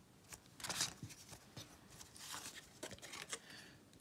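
Faint rustling and light clicks of trading cards and a foil pack wrapper being handled as cards are slid out of a freshly opened booster pack, with a slightly louder rustle about a second in.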